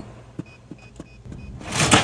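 Keys being pressed on a cash register keyboard as a price is keyed in by hand: a quick run of light clicks, with a faint beep tone among them. Near the end a rising rushing noise swells up and is the loudest sound.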